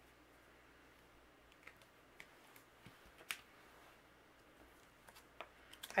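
Faint, scattered clicks and taps of clear acrylic stamping blocks and an ink pad being handled on a desk, the sharpest click about halfway through.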